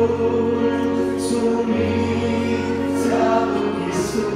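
Voices singing a Christian worship song together with instrumental accompaniment, long held notes over a steady bass.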